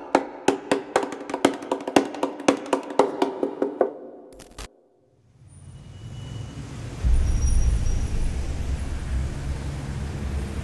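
Rhythmic music of quick, sharply struck notes, about four a second, which stops about four seconds in. After a brief silence, city street traffic fades in: a steady low engine rumble from heavy traffic.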